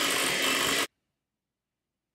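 Electric hand mixer running steadily while beating a cream cheese and crab filling in a glass bowl, cutting off suddenly after about a second.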